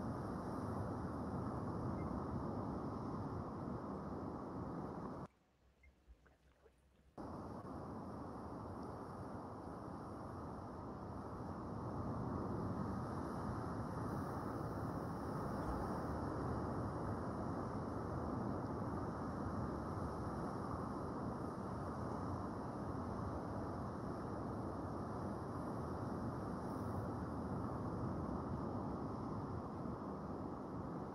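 Steady low rushing noise. It drops out for about two seconds some five seconds in, then carries on.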